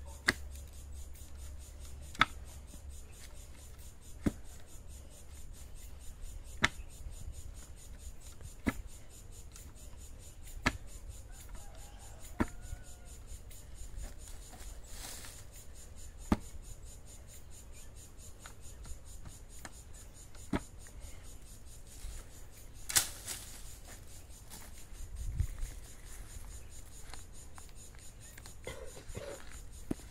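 Manual post-hole digger being driven into soft soil. A sharp strike comes about every two seconds as the twin blades bite into the hole, with a louder strike near the end.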